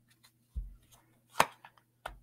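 Oracle cards being dealt onto a table. There is a soft thump about half a second in, then a sharp card snap a little before the end, followed by a couple of lighter clicks.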